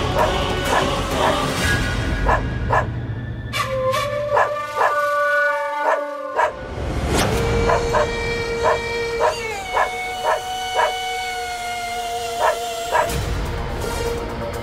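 A dog barking in a long series, about two barks a second, over dramatic background music with long held notes.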